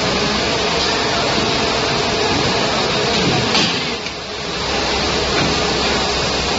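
Steady, dense mechanical noise of a running PVC shoe injection molding machine, with a brief click about three and a half seconds in and a short dip in level just after.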